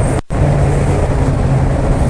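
2008 Corvette Z06's 7.0-litre LS7 V8 idling with a steady low hum, heard close up in the open engine bay.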